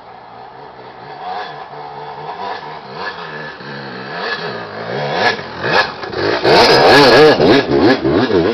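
Dirt bike climbing a wooded trail toward the microphone, its engine revving up and down as the rider works the throttle. It grows louder until the bike passes close by near the end, with a few sharp clacks at the loudest point.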